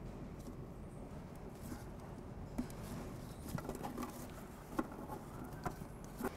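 Faint handling sounds of gloved hands pushing single bullet connectors together and moving headlamp wiring: small scattered clicks and rubs, more of them in the second half, over a low, steady workshop hum.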